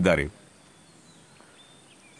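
A man's speaking voice trails off, then a pause of quiet outdoor background with a few faint high bird chirps.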